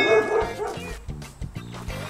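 A dog barking rapidly, about five barks a second, over background music; the barking trails off within the first second.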